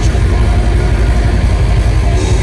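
Death metal band playing live at high volume: heavily distorted electric guitar and bass over a rapid low pulse of drums.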